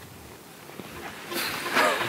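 Quiet outdoor ambience, with a faint steady hiss, for the first second or so. Near the end, a rising swell of sound comes in as background music starts.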